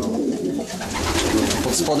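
Racing pigeons cooing in their loft, the recently paired birds calling over a low steady hum.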